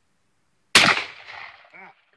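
A single gunshot from a firearm, a sharp report about three-quarters of a second in whose echo trails off over roughly a second.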